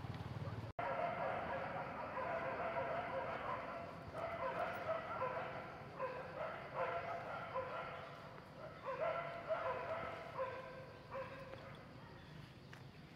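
Macaque giving a long run of high cries one after another, their pitch bending up and down. They start abruptly about a second in and die away shortly before the end.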